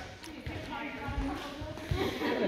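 Volleyballs bouncing on a gym floor: several dull, irregular thuds, with faint chatter of players in the hall behind them.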